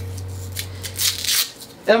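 A low steady hum that cuts off about a second and a half in, with a brief rustle about a second in as a cable is handled.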